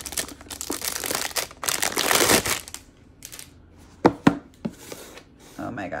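Clear plastic wrap crinkling and tearing as it is pulled off a small cardboard gift box, loudest about two seconds in and stopping before the halfway mark. Two sharp knocks follow a little after four seconds.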